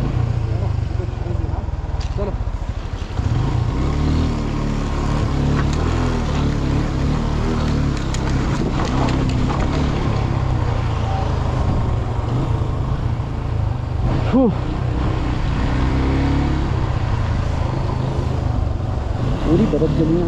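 A TVS Apache motorcycle's single-cylinder engine running at low revs as the bike is worked slowly over loose, icy stream-bed rocks, a little louder from about three seconds in.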